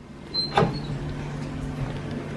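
Interior door opened by its lever handle: a single latch click about half a second in, over a steady low hum.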